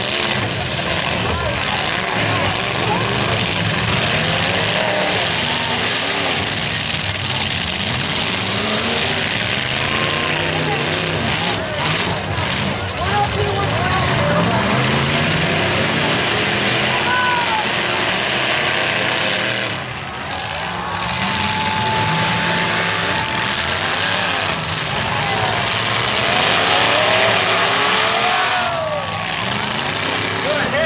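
Several demolition derby trucks' engines revving and running hard as they drive around a dirt arena, their pitch rising and falling throughout over the crowd's noise. A steady held tone sounds for about two seconds past the middle.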